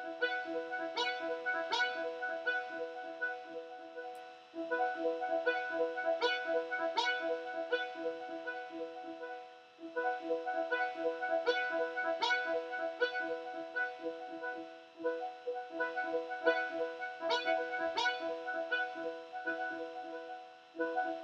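Arpeggiated synthesizer notes from Ableton Operator's Brass-Brassy Analog preset, driven by the PolyArp arpeggiator in a fast repeating pattern. The pattern breaks off briefly about every five seconds.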